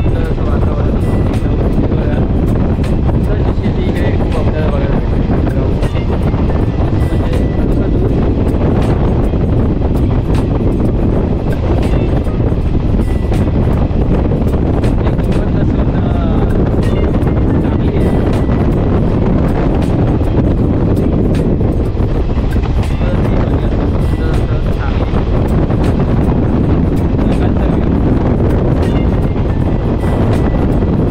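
Mahalaxmi Express passenger train running at speed, heard from an open doorway: a steady rumble of the train on the track under loud wind on the microphone.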